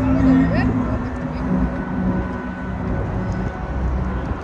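Crowd chatter over held notes of the fountain show's orchestral music from loudspeakers, with a steady low rumble underneath. The held notes fade after about two seconds.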